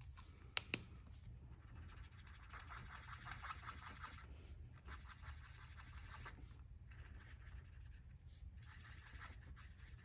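Faint scratching of an Ohuhu alcohol marker's nib stroking over cardstock paper, coming and going in uneven strokes, with a couple of light clicks about half a second in.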